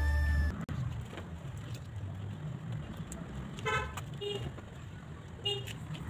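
Background music that cuts off about half a second in, then faint outdoor ambience with a few short vehicle-horn toots in the second half.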